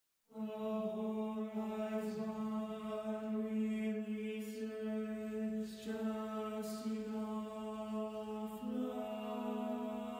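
Tenors and basses of an a cappella choir singing softly, setting words on repeated sustained notes. The pitch steps up once near the end.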